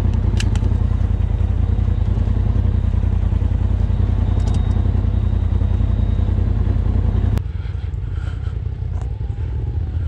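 Polaris RZR side-by-side engine idling steadily, heard close from the driver's seat, with a few sharp clicks in the first second. About seven seconds in, the sound cuts abruptly to a quieter, more distant engine.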